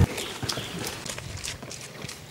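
Footsteps of a person running away over grass and dirt: a quick, uneven series of soft thuds.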